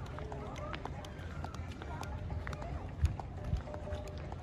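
Outdoor ambience on a busy paved plaza: distant voices and a low steady rumble, with children's footsteps walking and running, and a single sharp knock about three seconds in.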